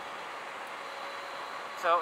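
Steady rush of wind and road noise from a moving electric motorcycle, with a faint steady whine under it. A man's voice starts right at the end.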